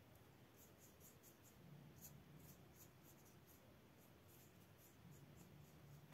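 Near silence, with a fine paintbrush brushing faintly on watercolour paper in a series of short, soft scratches, over a faint low hum that comes and goes.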